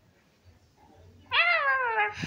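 A child's voice imitating a cat: one drawn-out meow that rises and then falls in pitch, starting about a second and a half in.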